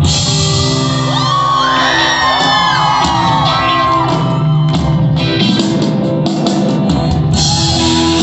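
Live pop-rock band playing through a concert PA in a large hall, with guitar, drums and keyboard, and high shouts and whoops from the crowd close to the recording phone.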